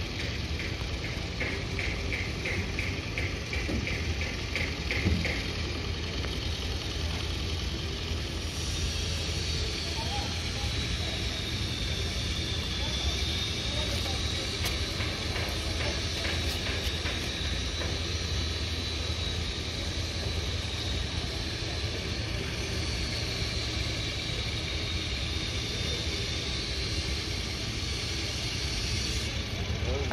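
Construction-site noise: a steady low engine rumble with machinery clatter. A quick run of high chirping pulses comes in the first few seconds, and a high wavering whine runs from about a third of the way in until near the end.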